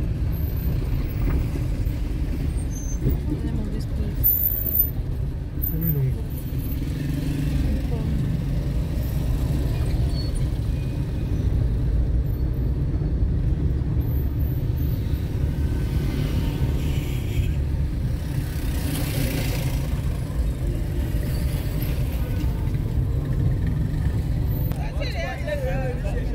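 Car driving through city traffic, heard from inside the cabin: a steady low engine and road rumble, with indistinct voices on top.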